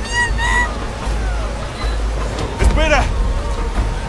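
Short honking animal calls, with a louder run of them about three seconds in, over a steady low rumble.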